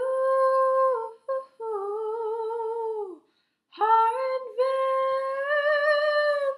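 A young woman's voice singing unaccompanied, wordless long held notes with vibrato. The first note is held for about a second. The second is lower and falls away at its end. The third begins near the four-second mark and rises slightly.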